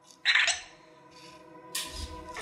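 Anki Vector robot giving a short, high electronic chirp about a quarter second in, then a fainter chirp, and a sharp rushing noise near the end.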